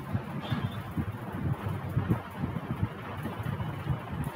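Low, uneven rumbling background noise picked up by the microphone, with a faint hiss above it and no clear single event.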